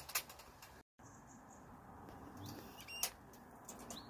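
A rat caught in a wire humane cage trap gnawing at the metal bars: faint scattered clicks and ticks, with one sharper, ringing tick near the end. A few faint high chirps sound behind it.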